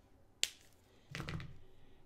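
A single sharp plastic click from handling a Copic alcohol marker, a little under half a second in. It is followed by quieter handling noise from about a second in.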